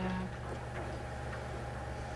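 Quiet room tone in a meeting room: a steady low hum with a few faint ticks.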